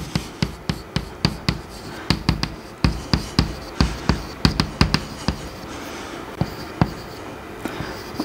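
Chalk writing on a chalkboard: an irregular run of sharp taps and clicks as the strokes land, thinning out to a few scattered taps after about five seconds.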